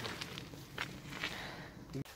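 Quiet footsteps on a gravel path, about two steps a second.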